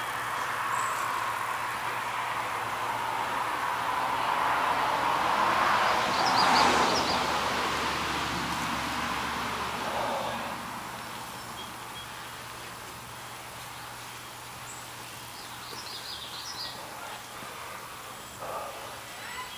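Outdoor ambience with a vehicle passing: a rushing noise that swells to its loudest about six to seven seconds in and fades out by about ten seconds. Short bird chirps come in a few times over it.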